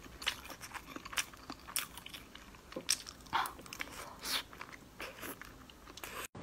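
Close-miked mouth sounds of a person chewing a whole egg: a scatter of short clicks and smacks, a few of them louder.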